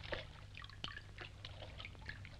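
Faint trickling and splashing of water running from a pipe into shallow water, with scattered small ticks over a low steady hum.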